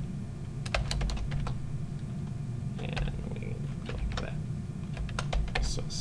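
Typing on a computer keyboard: short runs of keystrokes about a second in, around three seconds in and near the end, over a steady low hum.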